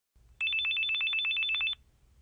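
Cell phone ringing: an electronic trill of rapid high beeps on two alternating pitches, about ten a second. It starts about half a second in and stops after about a second and a half.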